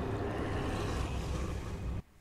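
A steady, low rumbling noise from a horror film's soundtrack that cuts off suddenly at the end.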